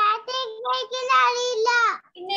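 A young child singing a nursery rhyme over a video call, holding long, steady notes that step up and down in pitch.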